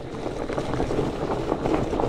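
A fat bike's wide tyres rolling over a leaf-covered dirt trail while coasting without pedalling: a steady rumble full of small crackles that grows gradually louder, with wind on the microphone.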